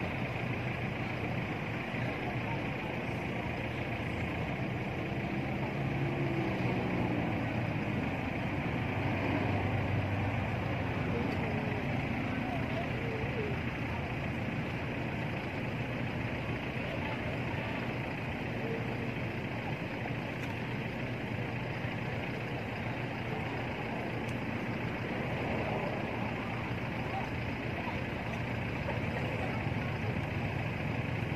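Steady low engine-like rumble, like a vehicle idling nearby, with faint indistinct voices over it.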